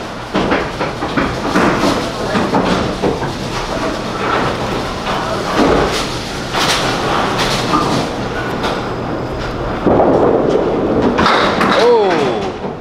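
Candlepin bowling alley: a small candlepin ball rolling down a wooden lane and knocking into pins with clattering knocks about halfway through, among other lanes' rolling, pin clatter and voices.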